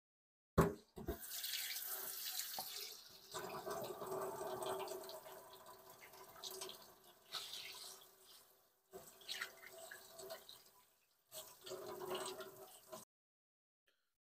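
Kitchen faucet running water over a whole red snapper in a stainless steel sink, the stream splashing off the fish and the steel as it is rinsed by hand. A sharp knock comes about half a second in, just before the water starts; the flow breaks off briefly twice and stops about a second before the end.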